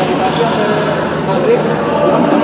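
Badminton hall ambience: continuous background chatter of players, with rackets hitting shuttlecocks, one sharp hit right at the start.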